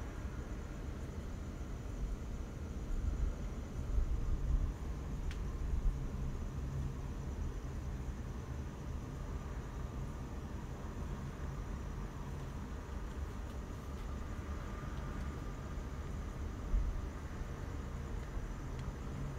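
Steady low rumble with a faint hiss: background noise with no distinct event.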